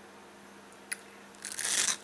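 A bite into a crisp pan-fried ramen-noodle taco shell: a small click, then one loud crunch about a second and a half in, lasting about half a second.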